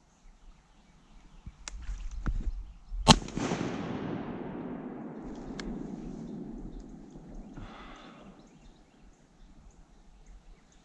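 A single shotgun shot about three seconds in, with a long rolling echo that slowly dies away over several seconds. Just before it there is a second of rustling and a few sharp knocks of movement.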